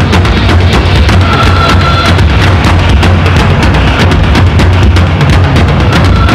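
Loud live industrial percussion music: a drum kit and heavy drums play a fast, dense beat, with a brief high held tone about a second in.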